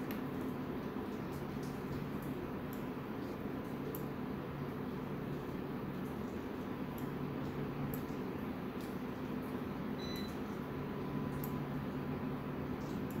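Steady low hum of computer fans, with faint, scattered clicks every second or so, likely from a mouse.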